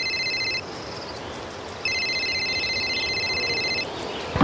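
Telephone ringing with an electronic trilling ring: one ring ends about half a second in, and after a pause of just over a second a second two-second ring sounds until near the end.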